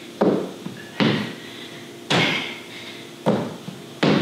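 Four thuds about a second apart as hands and feet hit the floor during burpees with a jump.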